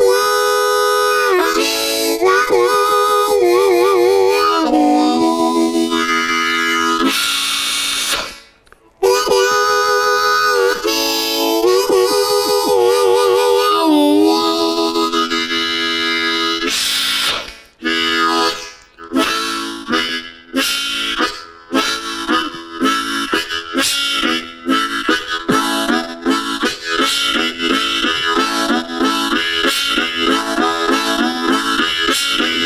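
Solo harmonica imitating a train. Long, bending wailing chords like a train whistle, broken by a brief pause about eight seconds in, give way at about seventeen seconds to a chugging rhythm of breathed chords that gets faster.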